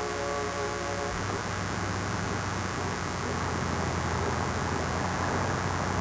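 Propeller aircraft engines running steadily on a carrier deck before takeoff, under the hiss of an old film soundtrack. A few steady tones fade out in the first second or so.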